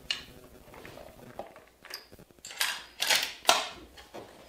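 A series of sharp metallic clicks and clinks, a few scattered at first and then a louder cluster in the last second and a half: cartridges and the bolt action of a scoped rifle being handled as it is readied to fire.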